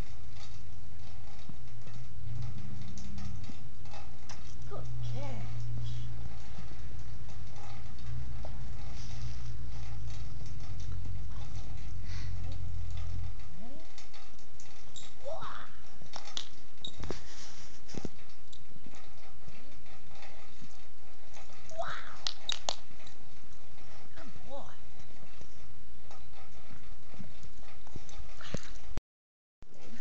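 A dog's feet and a person's footsteps crunching and patting in snow during play, over a low rumble that stops about halfway through. A few short rising cries are heard later on.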